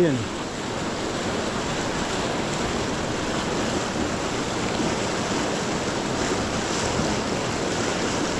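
Fast-flowing river rushing over rocks through white-water rapids, a steady unbroken roar of water.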